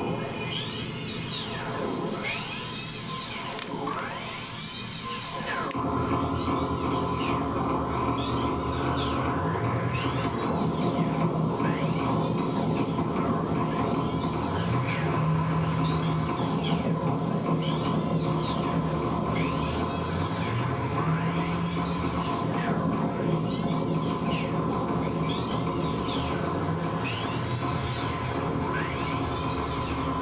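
Electronic noise from a chain of guitar effects pedals (distortion, flanger, delay): sweeping whooshes that repeat about once a second over a steady drone. About six seconds in a denser drone comes in, with a low tone that steps up and down in pitch.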